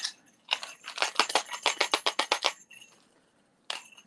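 Small pieces of costume jewelry clinking and rattling as they are handled on a table: a quick run of small clicks lasting about two seconds, starting about half a second in.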